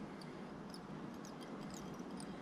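Quiet room tone with a few faint, scattered high ticks from fly-tying thread being wrapped down a hook shank held in a vise.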